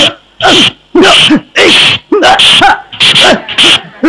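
Loud short shouted cries of 'ah', repeated about twice a second in a steady rhythm: men's voices yelling with each exchange of a stick fight.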